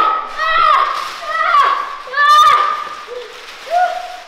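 Children yelling and shrieking without words: a string of short, high-pitched cries, with a shorter, lower call near the end.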